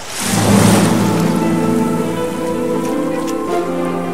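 Intro music for a logo animation: a loud rushing swell opens into a sustained synthesized chord, with some of its notes changing about three and a half seconds in.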